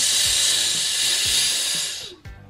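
Steady sizzling hiss as a knife blade heated with a lighter is pressed onto an orange's peel, fading out near the end.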